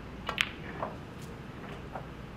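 A snooker shot being played: one sharp click of the cue ball being struck and hitting another ball about half a second in, then two fainter clicks later on.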